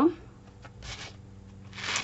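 Soft rustling of a roll of rainbow glitter ribbon material being handled and rolled up in the hands, with a faint rustle about a second in and a louder one near the end.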